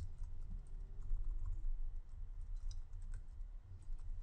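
Computer keyboard typing: quiet, irregular keystrokes entering a line of text, over a steady low hum.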